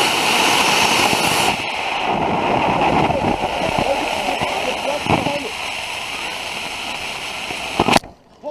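Estes model rocket motor mounted on an RC car firing with a loud, steady rushing hiss, harshest for the first second and a half, then a sharp pop near the end as the ejection charge goes off.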